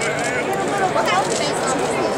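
Crowd chatter: many voices talking and calling out over one another at once, with no single voice standing out.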